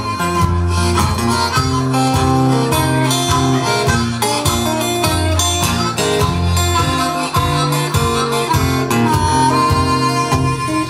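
Live harmonica solo played cupped into a microphone, with strummed acoustic guitar accompaniment, in a continuous run of held notes over a steady rhythm.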